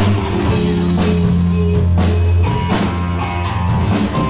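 Live rock band playing an instrumental passage: drum kit hits over electric guitar and sustained low bass notes, with no vocals yet.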